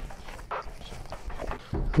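Gloved hands kneading and squeezing ground elk sausage mix in a stainless steel bowl: soft, irregular squelches and slaps. The meat is being mixed until it binds and turns sticky.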